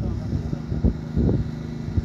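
Low rumble of outdoor background noise with faint steady low tones and a couple of soft thumps near the middle.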